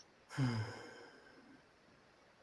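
A person's sigh: a short voiced exhale that begins about a third of a second in and trails off into breath within about a second.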